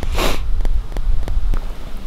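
A person sniffing once, close to the microphone, a short hissy breath about a quarter second in, over a steady low rumble on the microphone.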